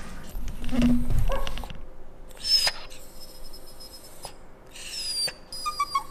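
Italian greyhound crying with high-pitched whines, one a couple of seconds in and another near the end, crying to be fed.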